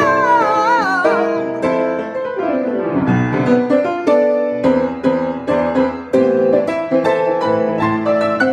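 A woman's voice holds a sung note with vibrato over piano, ending about a second in; then the grand piano plays on alone in a jazz style, chords and single notes with a falling run about two to three seconds in.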